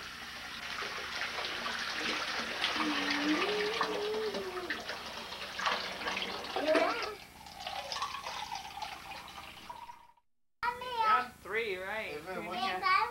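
Water running from a bathtub tap into the tub, with a small child's voice over it; the flow stops about seven seconds in.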